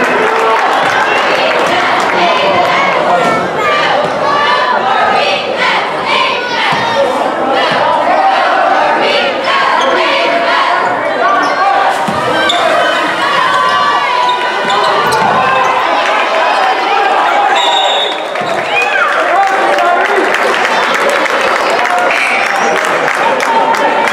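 A basketball dribbled on a hardwood gym court, its bounces heard among the steady voices and shouts of players and spectators in the gym.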